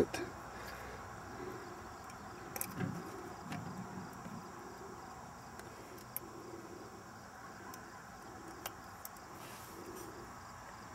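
Quiet handling of a fireworks firing module: faint clicks and rubbing as igniter lead wires are pushed into its spring-clip terminals.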